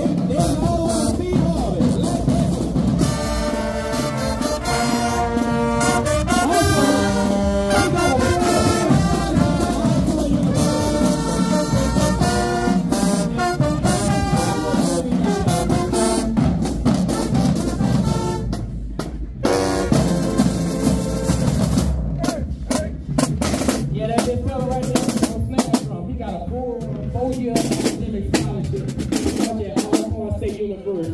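High school marching band playing as it marches: trumpets, trombones and sousaphones play a tune over bass drums and cymbals. The horns are loudest in the first half. After a short break about two-thirds in, the drums carry on with less brass.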